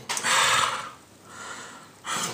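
A man's heavy breaths, out through the nose: a loud one in the first second and a softer one about a second later.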